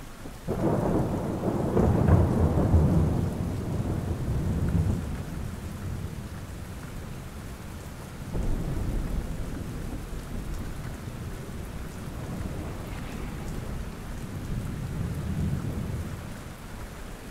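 Steady rain with a long roll of thunder that starts about half a second in, peaks about two seconds in and fades over several seconds. A softer rumble of thunder comes near the middle and another near the end.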